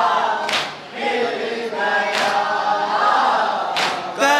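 A group of men chanting a noha, a Shia mourning lament, in unison into a microphone. Three sharp slaps about a second and a half apart beat time under the voices: hand-on-chest matam.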